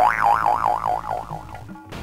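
Cartoon-style comic sound effect: a warbling tone that wobbles up and down in pitch about five times a second, starting suddenly and fading away within about a second and a half.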